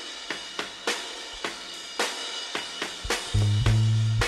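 A drum-kit backing track plays a steady beat of snare, hi-hat and cymbal hits. About three seconds in, a 1967 Klira Twen Star 356 violin-shaped electric bass with flatwound strings comes in with loud, deep plucked notes.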